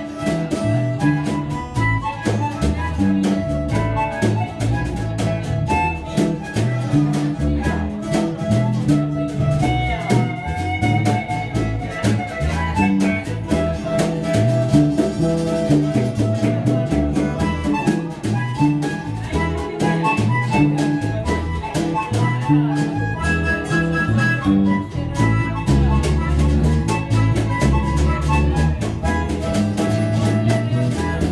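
Funk band playing live: an instrumental groove with a steady beat and a moving low line underneath.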